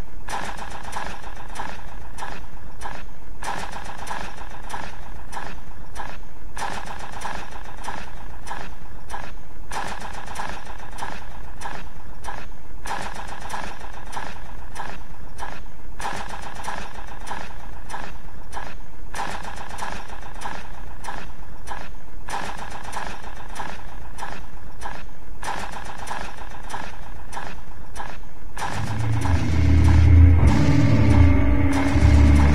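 Industrial noise music: a dense, steady noise with a humming mid-range drone, broken by short gaps about every three seconds in a repeating loop. Near the end a heavy bass comes in.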